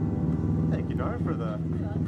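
A person talking close by over a steady low hum of a vehicle engine running on the street.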